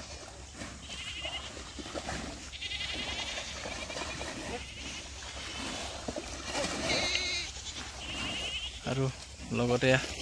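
Several short, wavering high-pitched animal calls a few seconds apart, over a faint steady outdoor background.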